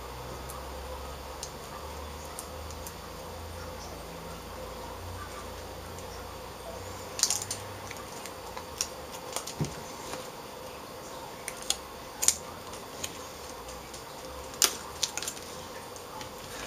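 Aluminium foil tape being handled and its backing peeled, giving scattered small crackles and ticks, several in the second half, over a low steady hum.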